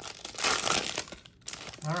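Clear plastic trading-card pack wrapper crinkling as a stack of cards is pulled out of it and handled, loudest in the first second and fading by about a second and a half in.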